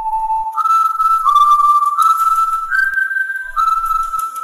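A whistled tune of several held notes: one lower note, then a leap up and a few notes stepping slightly up and down, played as the jingle for a time-skip transition.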